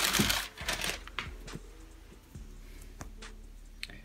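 Tissue paper rustling and crinkling as a sneaker is pulled out of its box, loudest in the first second, followed by a few soft scattered clicks and rustles of handling.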